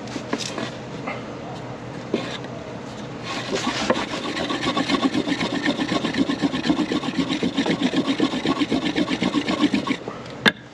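A wooden block rolling a cotton tinder roll back and forth on a wooden board, a Rudiger roll for friction fire: a few slower strokes at first, then from about three seconds in a fast, steady back-and-forth rubbing, several strokes a second, that grows louder as speed and downward pressure go on to heat the cotton until it smoulders.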